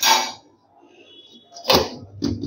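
A stainless steel plate is handled and set down over a steel bowl: a short swishing burst at the start, a faint high ring in the middle, and a brief knock near the end.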